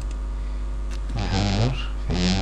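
A man's brief wordless vocal sound, a short murmur about a second in, over a steady low electrical hum.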